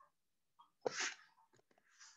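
A single short, sharp burst of sound from a person about a second in, followed by a few faint clicks.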